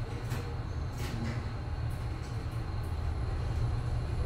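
Hyundai elevator car travelling upward: a steady low rumble, with a couple of faint clicks in the first second or so.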